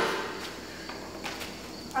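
Footsteps and knocks on a concrete garage floor: a sharp knock at the start and softer ones a little past the middle, over a faint steady insect chirr. The dirt bike's engine is not running.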